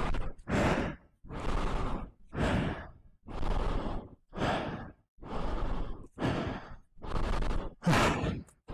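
A man panting hard and out of breath, quick heavy breaths about once a second, picked up close by a wireless microphone inside his face mask.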